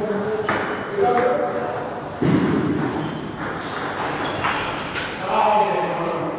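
Table tennis balls clicking off bats and tables at several tables in a large hall, at irregular intervals, with voices in between. A sudden louder noisy sound comes about two seconds in.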